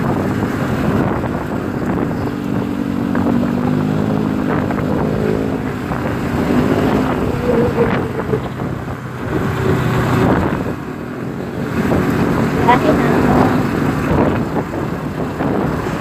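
Engine of an open passenger vehicle running on the road, a steady low drone that rises and falls, with wind buffeting the microphone.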